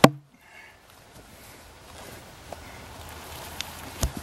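A sharp knock at the very start, then quiet outdoor background with faint rustling and a couple of light ticks as a heavy log is worked over dry grass and pine needles with a wooden-handled hook tool.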